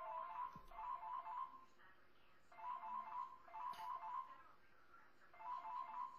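A faint electronic melody of short repeated high notes, played in phrases about a second long with brief gaps between them.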